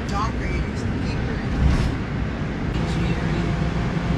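Steady low road rumble and tyre hiss inside a moving taxi, heard from the back seat.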